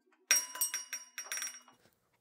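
A jingle of small bells or loose metal pieces, a quick run of shaken strokes with a bright ringing. It starts a moment in and dies away after about a second and a half.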